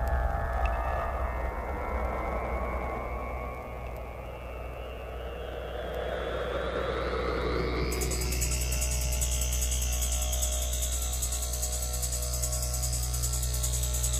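Electronic trance music from a live DJ set, in a breakdown: a sweeping synth sound over a steady low bass, dipping in loudness midway. About eight seconds in, the top end opens suddenly with a fast, bright ticking rhythm.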